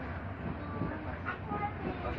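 Steady low rumble of a passenger train carriage in motion, heard from inside the carriage, with faint children's voices over it.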